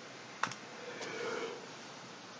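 A single computer mouse click about half a second in, faint against the room.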